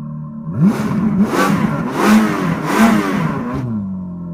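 Car engine revved hard several times, its pitch rising and falling with each rev for about three seconds, over a steady low droning music note.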